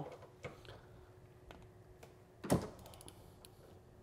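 A hand ratchet with a Torx bit is slowly loosening the side mirror's M8 mounting bolts, giving a few sparse, light clicks. One louder knock comes about two and a half seconds in, followed by a quick cluster of small ticks.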